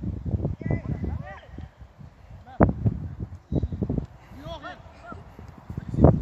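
Indistinct voices talking, with several sharp thumps, the loudest about two and a half seconds in.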